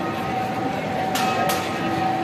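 Street crowd murmuring while a procession approaches, under a few steady held tones, with two short hissing noises about a second and a half in.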